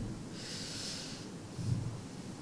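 A man breathing in through his nose close to a handheld microphone: one soft, hissy in-breath of about a second, then a faint low murmur near the end.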